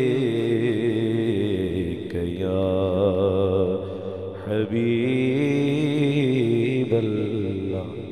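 A man singing a naat unaccompanied, drawing out long held notes with a wavering, ornamented pitch, with brief breaks for breath about two seconds in and again around the middle.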